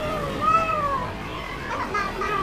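A young girl crying: one drawn-out, whining wail that rises and then falls away about a second in.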